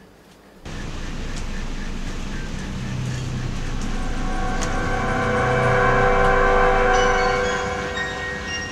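Eerie horror film-score drone: a cluster of held tones enters suddenly about half a second in, swells over several seconds and eases off near the end.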